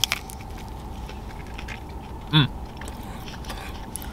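A bite into a crisp tlayuda tortilla, a sharp crunch right at the start, then quiet chewing with small scattered clicks and a short 'Mmm' a little past halfway, over a steady low hum.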